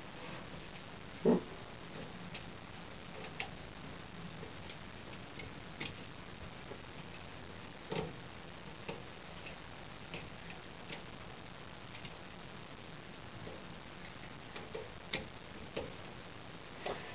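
Sparse small metallic clicks and ticks from an Allen wrench turning the clamp bolts of a bow press frame on a compound bow limb, with a louder knock about a second in and another about halfway through.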